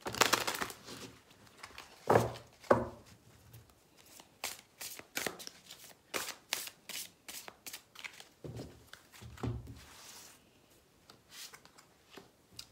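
A deck of cartomancy cards shuffled by hand: quick repeated card snaps and slaps in bursts, heaviest in the first few seconds and thinning out near the end.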